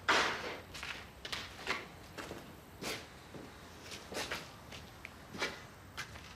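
Footsteps of two people walking over a gritty, debris-strewn floor: a string of irregular scuffing steps, about one or two a second, the first one loudest.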